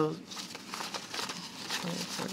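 Paper banknotes rustling and flicking as a stack of bills is thumbed through by hand, counting through the notes one by one.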